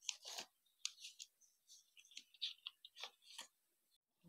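Joss paper sheets rustling and crackling in short, irregular crisp snaps as the folded pleats are pressed and adjusted by hand, faint.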